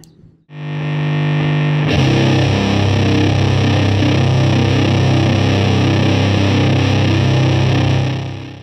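Heavily distorted stoner-rock electric guitar: a single chord rings out about half a second in, then the full band comes in near two seconds and plays on steadily.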